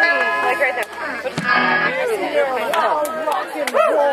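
A live band's guitar notes ring and stop about two seconds in, under a crowd of people talking.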